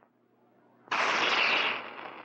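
A crown cap prised off a beer bottle with a bottle opener: about a second in, a sudden loud hiss of escaping carbonation that fades away over the next second.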